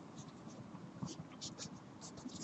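Faint, short strokes of a felt-tip marker writing on paper.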